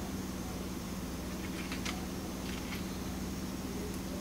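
Steady low electrical hum of room noise, with a few faint light clicks and crinkles from a carded plastic lure package being handled, near the middle.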